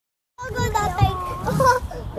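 A child's high voice calling out, starting about half a second in, over a low rumble.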